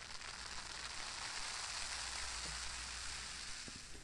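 A steady hiss that starts suddenly and fades out just before the end.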